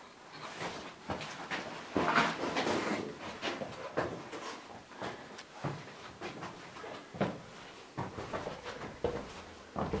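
Irregular scuffing footsteps and knocks on stone in a narrow passage, with the rustle of a handheld camera being carried, densest about two seconds in.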